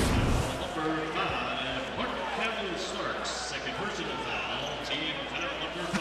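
A broadcast graphic transition sting, a swish with a low boom, right at the start, followed by the sound of a basketball arena: a crowd's many voices.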